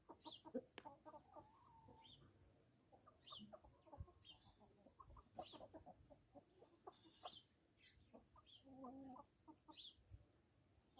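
Salmon Faverolles chickens clucking faintly in short scattered calls, with a longer call near the end.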